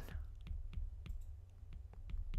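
Stylus tip tapping and clicking on a tablet's glass screen while handwriting, an irregular series of light clicks about three a second.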